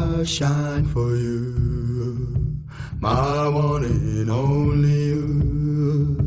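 A song playing: a singer holding long, drawn-out notes over a steady bass, in two phrases with a short break a little before halfway through.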